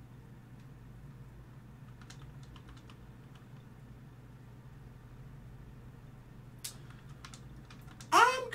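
Faint computer keyboard keystrokes in two short runs, about two seconds in and again near the end, over a low steady hum.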